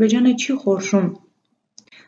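A woman speaking Armenian for about a second, then a pause of near silence.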